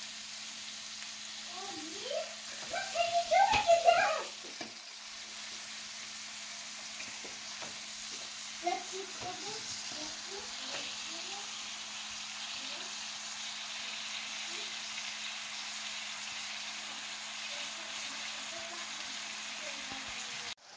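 Chopped vegetables and spices frying in a stainless steel pan with a steady sizzle while raw minced meat is tipped in from a sieve, over a faint steady hum. A voice speaks briefly about two to four seconds in, the loudest part, and fainter voice sounds come and go a few seconds later.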